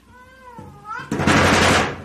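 A cat meows once, its pitch wavering and rising at the end. About a second in, a frosted-glass sliding door rattles loudly for most of a second.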